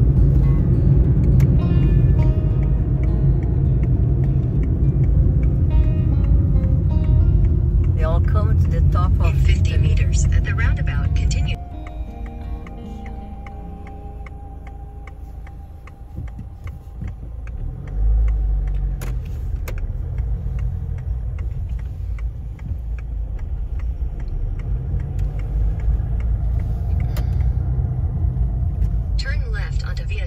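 Car road noise heard inside the cabin: a loud, steady low rumble of tyres and engine that drops suddenly after about eleven seconds to a quieter low drone, with a low thump a little past halfway.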